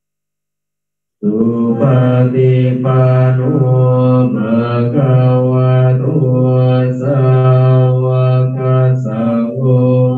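Buddhist devotional chanting held on one steady low pitch, syllable after syllable, led by a voice on a microphone. It starts suddenly about a second in, after silence.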